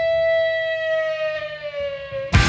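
A single held Hammond organ chord-tone rings on alone with the band dropped out, its pitch sagging slowly downward as it fades a little.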